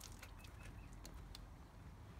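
Near silence: faint outdoor ambience with low rumble and a few light clicks, just after the tap water has been shut off.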